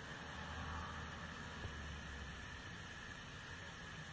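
Steady background hiss with a low hum underneath: room tone and recording noise, with no page handling.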